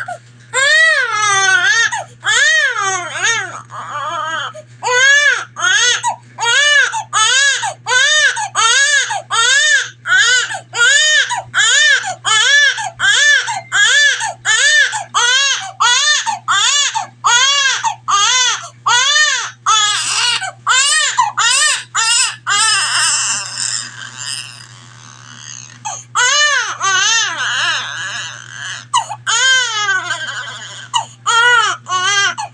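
Newborn baby crying hard in a rapid run of short wails, about two a second, each rising and falling in pitch. A little past two-thirds of the way through the cries weaken into a breathier stretch, then pick up again.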